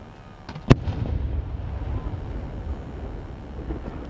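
Aerial firework shell bursting: one sharp, loud bang under a second in, after a couple of faint cracks, followed by a low rumble that lingers.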